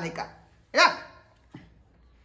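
A dog barks once, short and sharp, about a second in.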